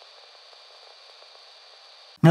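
Faint steady hiss, even and unchanging, with no music or voice.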